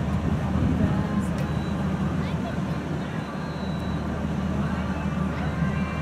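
A steady low mechanical hum, like a running engine, with indistinct voices in the background.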